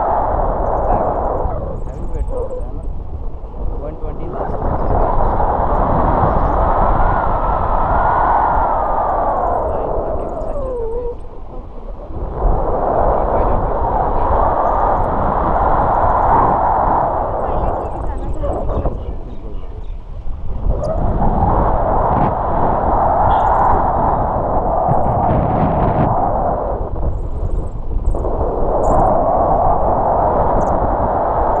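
Wind rushing over the camera's microphone in paragliding flight, loud, swelling and fading in long waves every few seconds.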